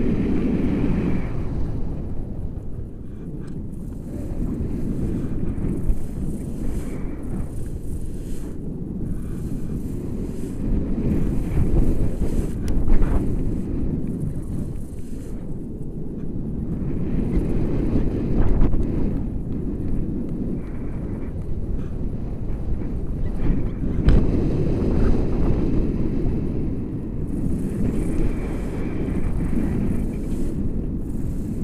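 Wind buffeting the microphone of a selfie-stick camera on a paraglider in flight: a loud, low rumble of rushing air that swells and eases in gusts.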